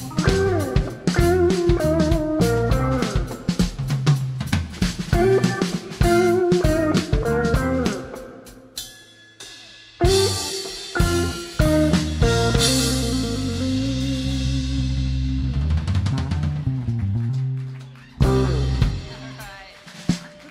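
Live band of electric guitar, drums, bass and keyboard playing, the Telecaster-style guitar taking a lead with bent notes over the drums for the first eight seconds. After a brief drop, the band hits together about ten seconds in and lets held chords ring and fade, with another full-band hit near the end, like a song's closing.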